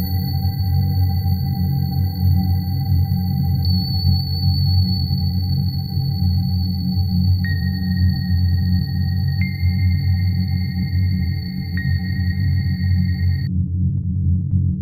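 Eerie ambient film-score drone: a heavy, steady low hum under sustained high, thin ringing tones that step in pitch a few times in the second half. The high tones cut off just before the end, leaving the low hum.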